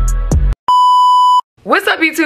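Intro music stops abruptly, then a single steady electronic beep, one flat tone lasting under a second, cuts off sharply; a woman's voice starts speaking near the end.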